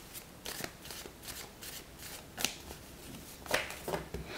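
A deck of oracle cards being shuffled by hand: a series of soft, irregular card slaps and riffles, the loudest about two and a half and three and a half seconds in.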